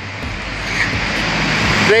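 A motor vehicle passing on the street: a broad rush of engine and tyre noise that grows steadily louder.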